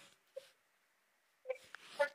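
A woman's voice over a microphone and PA in a hall, faint and broken into short fragments: a brief sound under half a second in, a gap, then a longer stretch of voice near the end.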